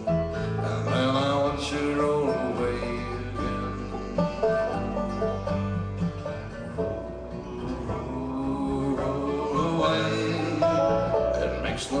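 Live bluegrass trio playing an instrumental break between sung lines: banjo and acoustic guitar picking over a bass line.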